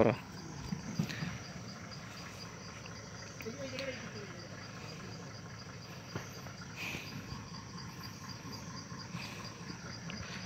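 Insects calling in forest undergrowth: a high, steady trill with rapid, even pulsing.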